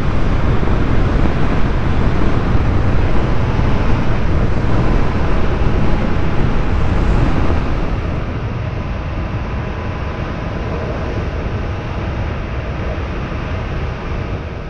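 Motorcycle ride noise recorded on the bike: a steady rushing sound of engine and road. It drops somewhat in level about eight seconds in.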